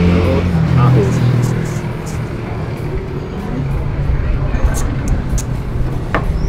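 Street traffic: a vehicle engine's low hum, strong at first and fading after about a second into a steady rumble. A few light clinks of a metal ladle against a clay pot come near the end.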